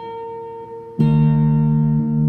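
Semi-hollow-body electric guitar played fingerstyle: a single note rings on, then about a second in a louder note with a deep bass is plucked and sustains.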